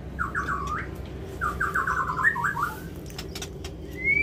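White-rumped shama (murai batu) singing: two short phrases of quick, repeated notes, the first right at the start and the second about a second and a half in.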